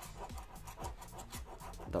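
A spoon scraping the coating off a lottery scratch card in quick, short strokes, several a second, uncovering a printed number.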